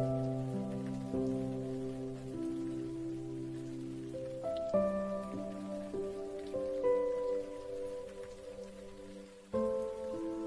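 Slow, soft piano music with held chords, new chords coming in at the start, about halfway through and near the end, over a steady rain recording.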